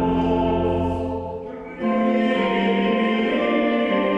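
Church pipe organ playing sustained chords with singing voices. The chord and its deep bass die away about a second and a half in, and a new, higher chord starts just under two seconds in.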